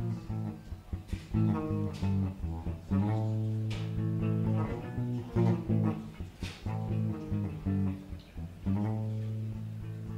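Guitar played live without singing: a run of plucked notes over low, ringing bass notes.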